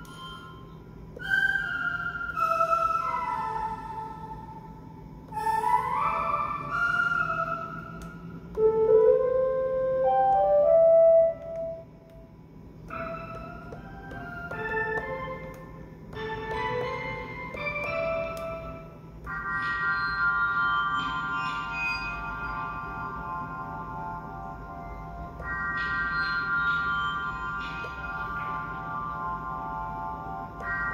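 Synth presets from the Akai MPC's Hype plug-in played on the MPC One's pads: melodic note phrases with gliding pitches, then short separate notes, then held keyboard-like chords for the last third.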